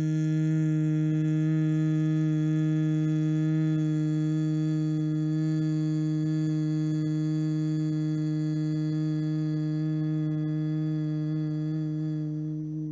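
A woman humming one long, even, low note on a slow exhalation: the bhramari pranayama 'bee breath' hum, held at a steady pitch.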